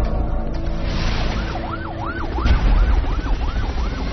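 A siren in fast rising-and-falling sweeps, about three a second, starting about a second and a half in, over music.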